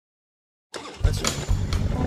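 Silence, then less than a second in a motorcycle engine comes in loud and keeps running with a heavy low rumble.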